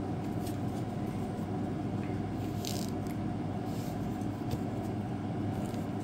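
Steady low room hum, with a few faint rustles and scrapes of baseball trading cards being handled and set into a plastic card stand, the clearest a little past halfway.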